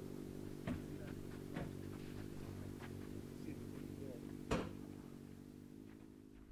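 A steady low hum made of several even tones, broken by three sharp knocks, the loudest about four and a half seconds in; it fades out at the end.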